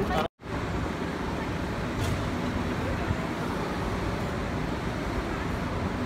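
Steady outdoor background noise with a low rumble, typical of distant road traffic, after a brief dropout to silence just after the start.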